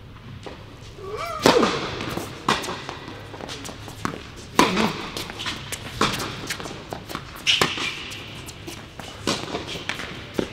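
Tennis ball hit back and forth with rackets in a rally on an indoor court. Each hit is a sharp pop that rings briefly in the hall, coming every one to two seconds, with fainter knocks between. The loudest pop is about a second and a half in.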